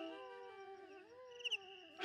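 A solo bamboo flute (bansuri) phrase dying away into a faint echo, its gliding notes repeating softer and softer.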